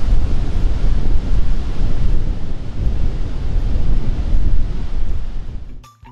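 Launch pad water deluge system pouring a torrent of water onto the pad: a loud, steady rush over a deep rumble, fading out near the end.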